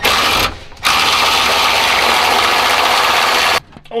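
A power tool running in two bursts: a short one that stops about half a second in, then a steady run of nearly three seconds that cuts off suddenly.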